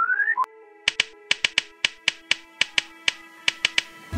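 Title-card jingle: a short rising electronic tone, then a quick, uneven run of about fifteen sharp clicks over a steady held musical chord.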